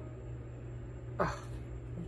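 A steady low hum, with a single drawn-out, falling "oh" from a woman about a second in.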